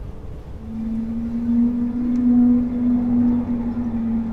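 Soundtrack drone: a steady low hum fades in about half a second in and swells over a deep, noisy rumble.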